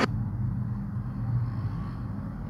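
Steady low hum and rumble of background noise, with no clear event.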